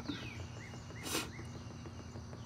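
Quiet outdoor background with a few short bird chirps and a brief scratchy noise about a second in.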